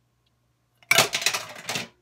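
Clicking and scraping from a jar of coconut butter being handled close to the microphone. It starts about a second in and lasts about a second.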